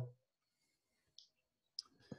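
Near silence broken by two faint short clicks, one a little over a second in and a sharper one near the end.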